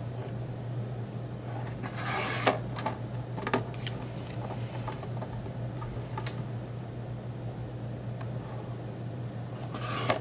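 Fiskars sliding-blade paper trimmer: its cutting head scrapes along the plastic rail through paper, with a rasping slide about two seconds in and another near the end. Light clicks and taps from the carriage come in between, over a steady low hum.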